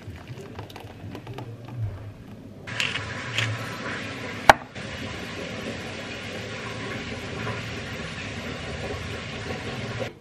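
Soft kitchen handling as soup is poured from a saucepan into a ceramic bowl and cream is spooned onto it. One sharp clink comes about four and a half seconds in, over a steady background hiss.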